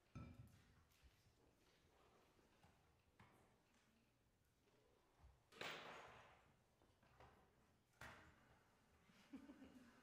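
Near silence with a few faint knocks and rustles, the most noticeable a brief rustle about halfway through and a click a couple of seconds later.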